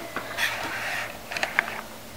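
Quiet rustling, then a few light clicks, as a marker is fetched and handled by hand.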